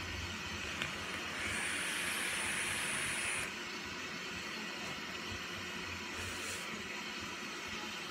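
A vape hit: air drawn through an e-cigarette atomiser while the coil fires. It makes a steady hiss with a thin high whine over it, which starts about a second and a half in and lasts about two seconds.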